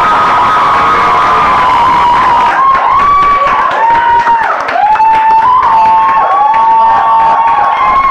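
Audience cheering loudly as an award is handed over, with a run of long, high held cries that step up and down in pitch.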